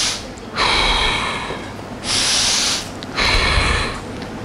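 A person breathing forcefully in and out, close to the microphone: about four breaths, each under a second, in a steady rhythm. The breaths are paced with a rowing pull and release.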